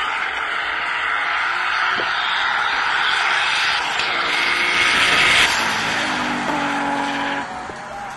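Tuned Nissan Skyline R32 GT-R straight-six running hard at high revs as the car accelerates past and away, loudest about five seconds in, then falling away sharply near the end.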